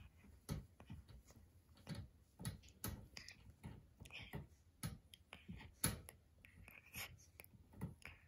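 Boston Terrier–pug puppy gnawing on a wire crate bar: faint, irregular clicks and scratches of teeth on metal.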